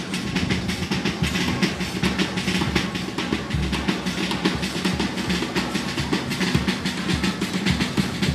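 Drums beating a fast, steady rhythm.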